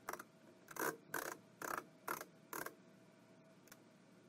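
Screwdriver snugging a Phillips screw into the mounting of an RV exterior door handle: about six short turning strokes roughly half a second apart, stopping a little past halfway through.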